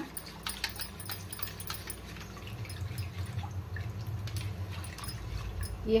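Silicone whisk beating thin spiced curd in a stainless steel pot: wet sloshing with many light irregular clicks as the whisk knocks against the pot.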